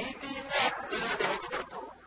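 A man speaking in short phrases with brief pauses, in a lecture-style discourse.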